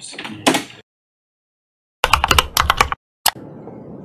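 Computer keyboard typed in a quick burst: about eight sharp clacks in a second, set between stretches of dead silence, followed by a single click and faint steady room noise.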